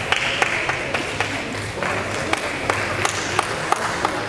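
Gymnastics hall ambience: a steady hubbub of voices with scattered sharp clicks, several each second, at irregular intervals.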